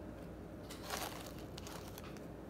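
Quiet room tone with a few faint, short clicks and rustles of handling in the middle.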